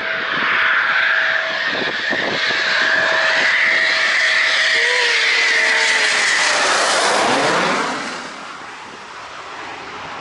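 Eurofighter Typhoon's twin turbofan engines, loud and steady as the jet approaches and flies low directly overhead, with a whine above the engine noise. About eight seconds in the pitch sweeps down and the noise drops away as it passes.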